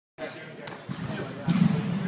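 Sharp knocks and thuds on a hard floor, a faint one about two-thirds of a second in and a louder one about a second and a half in, over background voices.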